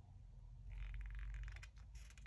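Faint rustle of a comic book's paper pages under the hands, a brief scratchy patch lasting about a second in the middle, over a low steady hum.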